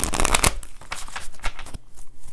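Tarot cards being shuffled by hand: a dense run of rapid card flutter in the first half second, then a few scattered clicks of cards.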